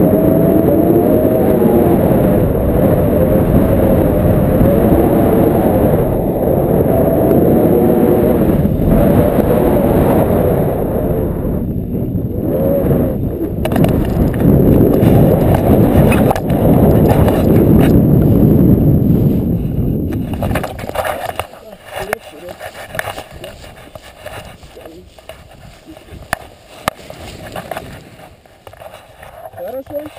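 Wind buffeting an action camera's microphone as a tandem paraglider descends and lands, a loud low rumble. About 20 seconds in it drops away sharply once the pair are on the ground, leaving scattered clicks and rustling of harness and camera handling.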